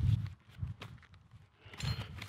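A few soft, irregular thumps and faint clicks from a person moving about on grass beside an unpowered mower, strongest right at the start and again near the end.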